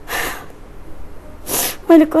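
A woman drawing two sharp breaths between words: a gasping breath just after the start, then a shorter, higher sniff about a second and a half in.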